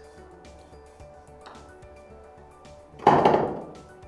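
Quiet background music. About three seconds in comes a single short clatter that starts sharply and dies away quickly, fitting a softly putted golf ball dropping into the cup.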